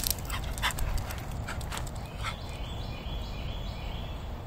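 A dog giving a quick series of short, sharp play barks and yips over the first two seconds.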